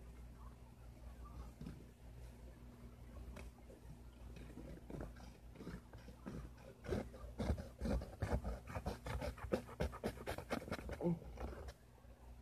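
A dull kitchen knife sawing at a sheet of paper, which crinkles and tears in a quick run of rasps from about seven seconds in instead of slicing cleanly. The blade is not sharp enough to cut paper.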